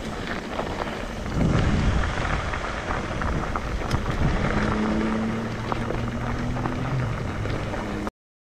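Mountain bike tyres rolling slowly over loose gravel, with scattered crunches and clicks and wind rumbling on the camera microphone. About halfway through, a steady low hum joins in.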